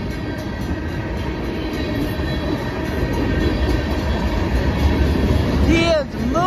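Freight cars of a long CSX freight train rolling past close by: a steady rumble of steel wheels on the rails that grows louder toward the end.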